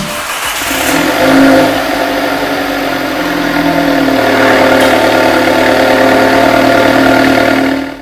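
Alfa Romeo Giulietta Veloce S's 1750 TBi turbocharged inline-four engine running: its revs rise briefly about a second in, then settle to a steady idle.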